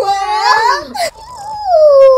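A young woman wailing playfully in a high voice. A squealing stretch in the first second gives way to one long note that slides down and then turns back up near the end.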